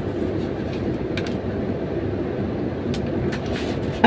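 Steady low rumbling background noise, with a couple of faint clicks about a second in.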